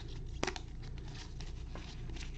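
A trading-card pack wrapper being torn open and crinkled in gloved hands, with one sharp snap about half a second in.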